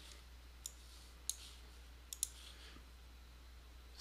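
Faint computer mouse clicks: four short clicks, the last two in quick succession about two seconds in, over a low steady hum.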